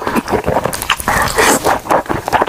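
Loud, close-miked wet slurping of thick jjajangmyeon noodles in black bean sauce, sucked into the mouth in a run of short, irregular pulls.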